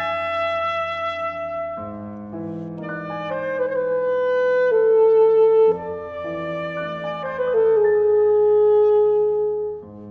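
Alto saxophone playing a slow melody of long held notes over soft piano chords, a classical chamber piece. The saxophone swells louder on two long notes, one near the middle and one near the end.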